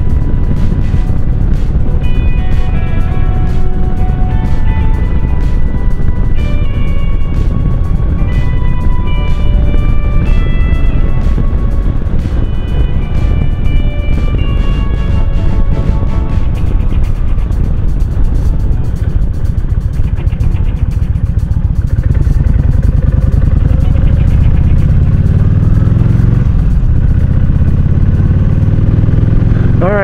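Kawasaki Vulcan cruiser motorcycle riding at road speed, a heavy steady rumble of engine and wind rush on the handlebar-mounted camera. Background music with a melody plays over it for the first half. Late on, the engine pitch climbs as the bike accelerates.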